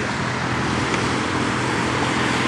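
Road traffic noise: a steady rush of passing vehicles with a low engine hum underneath.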